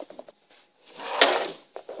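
Plastic Playmobil pieces being handled and moved: a short scraping rub with a sharp click about a second in.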